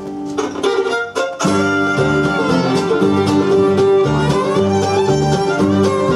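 Bluegrass string band of mandolin, fiddle, acoustic guitar and upright bass playing. The sound thins briefly about a second in, then the full band comes back in.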